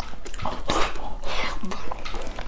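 Close-miked mukbang eating sounds: a man slurping and chewing soft braised pork knuckle, in several wet bursts, with a short low hum from his throat near the end.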